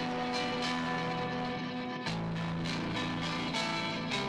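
Electric guitar music: picked notes about three a second ringing over held chords, with a chord change about two seconds in.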